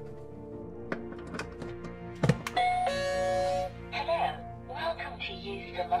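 A plug clicks into a wall socket, then the UV sterilizer box sounds a brief power-on chime and a recorded voice starts announcing the disinfection machine. Background music plays throughout.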